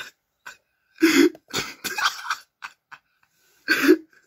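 A person laughing hard without words, in a string of short, breathy, cough-like bursts, with a short pause before a loud burst near the end.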